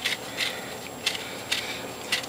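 A paring knife cutting into an orange and the peel being pulled away by hand, heard as a few short bursts spread about half a second apart.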